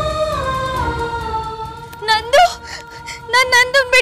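Dramatic background score: a sustained held chord, then from about two seconds in a high wordless vocal line with strong vibrato, in short phrases.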